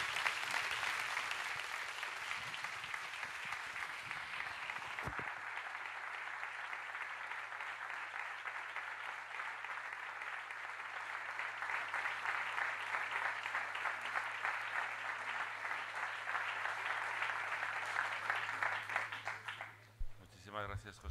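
Audience applauding: a long round of clapping that eases a little after the start, builds again in the second half and stops abruptly at the end.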